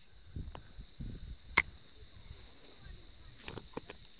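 Quiet riverbank ambience: a faint steady hiss with a few light clicks, one sharper click about a second and a half in.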